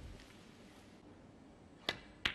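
A single sharp click near the end: a snooker cue tip striking the cue ball, played off the rest.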